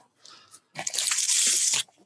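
Rustling, crunching noise from someone walking outdoors with a handheld recording device. It is faint at first, then loud for about a second.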